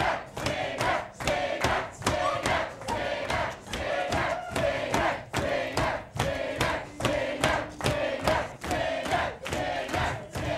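A lecture-hall crowd of students shouting a rhythmic chant in unison, with sharp beats landing in time about twice a second.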